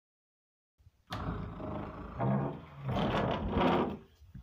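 A roar-like sound effect in three long, deep bursts, starting abruptly about a second in after silence.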